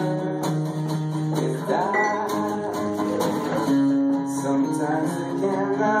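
Two acoustic guitars playing together live, a steady run of plucked notes that ring on.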